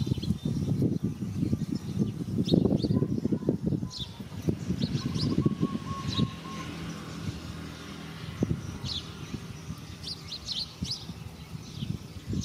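Small birds chirping repeatedly, in short high notes, with a flurry of chirps near the end. A dense low crackling noise is loudest during the first few seconds and fades after that.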